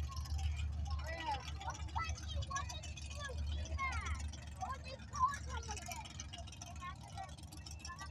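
Mud-bog trucks' engines idling at the starting line in a steady low rumble, with faint distant voices over it.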